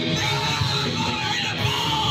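Live ska band playing electric guitars, bass and drums, with the lead vocalist yelling the lyrics into the microphone.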